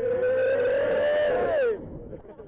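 A man's long held shout, loud and steady for about a second and a half, then sliding down in pitch as it breaks off near the end.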